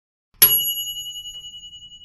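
One bright bell ding, a notification-bell sound effect, struck about half a second in and ringing on with a wavering, slowly fading decay.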